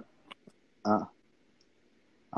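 A short pause in talk: two faint clicks, then a brief voiced 'aa' from one person, heard over a video-call link.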